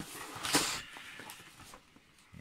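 Paper wrapping rustling and tearing as a parcel is pulled open by hand, loudest about half a second in and then fading.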